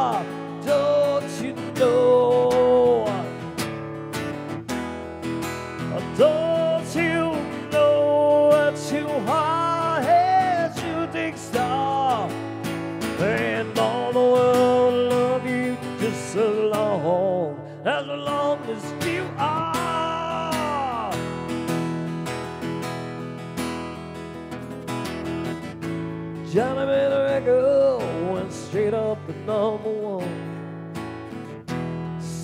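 Live acoustic guitar music. Steady strummed chords run underneath a melodic lead line of bending, arching notes, an instrumental break between sung verses.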